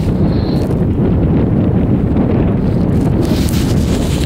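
Wind buffeting the microphone on a moving chairlift: a loud, steady low rumble without any clear rhythm.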